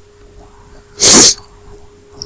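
A single short, hissing burst of breath from a person about a second in, lasting about a third of a second.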